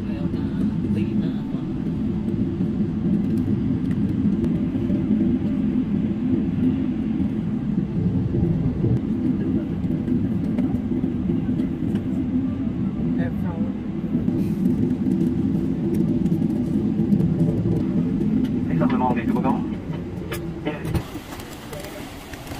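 Steady low rumble of an airliner's engines and cabin as it taxis after landing, heard from inside the cabin. The rumble drops away about two seconds before the end, where a few voices come in.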